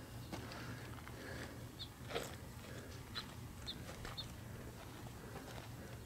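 Faint outdoor ambience: a steady low hum with a few very short, high chirps spread through the middle and a single faint click about two seconds in.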